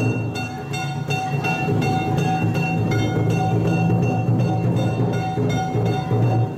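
Yamakasa festival float music: taiko drums beaten continuously under rapid, repeated strikes on ringing metal gongs.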